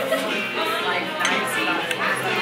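Knife and fork clinking and scraping on a plate, over the chatter of a busy restaurant dining room and background music.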